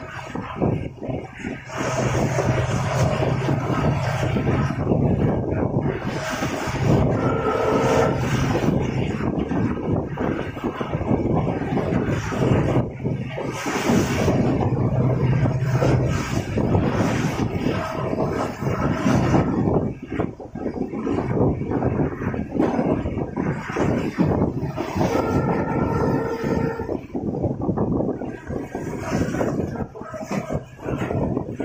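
Express passenger train running through a curving hill section, its wheels rumbling and clattering on the track, heard from beside the coach with wind on the microphone. A steady low hum runs through the first half, and brief higher tones ring out twice.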